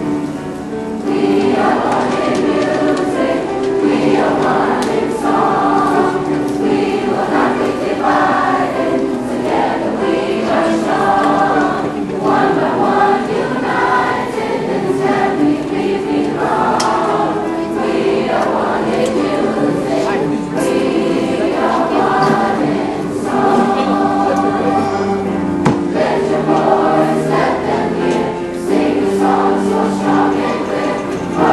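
Middle school concert chorus singing, a large group of young voices together.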